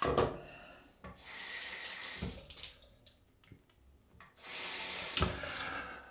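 Tap water running into a bathroom sink in two bursts of about a second each, rinsing lather off a double-edge safety razor, with a short knock as each burst ends and a sharper one at the very start.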